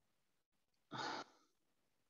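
A person's single short sigh about a second in, breathy and brief; otherwise near silence on the call line.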